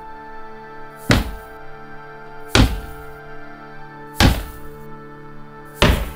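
Four heavy, evenly spaced footfalls, about one every second and a half, as an armoured figure comes down a wooden staircase, over a sustained chord of film score music.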